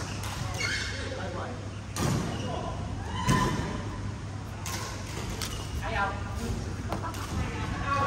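Badminton rally in a large hall: rackets strike the shuttlecock with sharp hits spaced a second or so apart, among short squeaks and voices, over a steady low hum.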